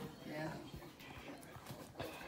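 A short spoken "yeah", then a quiet stretch of faint, scattered taps and handling noise as the bowl and phone are moved.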